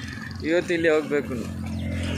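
A voice talking briefly, then the steady low rumble of road traffic, which grows a little louder near the end.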